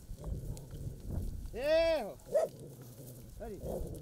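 Short animal cries among cattle and a herding dog: a few brief calls that rise and fall in pitch, the loudest about halfway through and a fainter one near the end.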